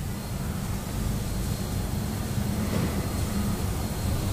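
Steady low rumble of background room noise, with no distinct events.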